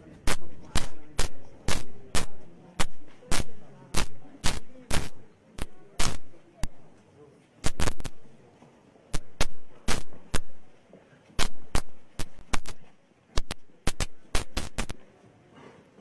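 Loud, sharp knocks close to the microphone, about two a second in a walking rhythm, as the person filming walks along with the camera: footfalls and handling bumps.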